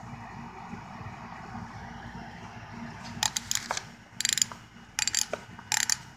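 Chrome combination wrenches clinking and rattling against one another and their rack as they are handled, in four short bursts of rapid metallic clicks over the second half, over a low steady hum.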